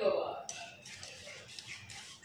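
A wire whisk stirring a thickened cornstarch pudding mixture in a metal pot, with faint scraping and a couple of light clicks of the whisk against the pot.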